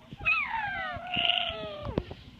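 A baby's long, high squeal that glides slowly downward in pitch for well over a second, then drops off sharply near the end.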